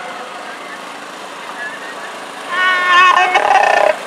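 A fire truck's horn sounding loudly about two and a half seconds in: one steady tone that drops to a lower, rougher tone and cuts off near the end, over a background of street noise and voices.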